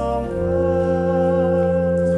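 Allen electronic organ holding sustained chords under a small male choir singing softly, with a chord change a moment in.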